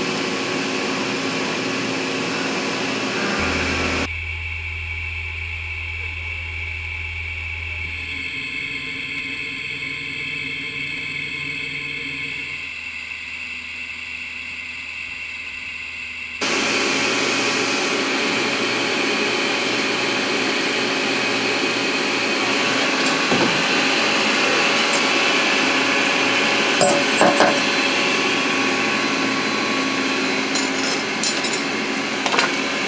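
CNC vertical milling machine cutting titanium knife scales with an end mill under flood coolant, heard as steady machine-shop running noise. The sound changes abruptly about 4 seconds in and again about 16 seconds in, with a quieter stretch between.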